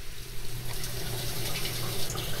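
Water rushing into the tank of an AC-44 conveyor dish machine as it fills through the opened fill solenoid valve, with a low steady hum underneath.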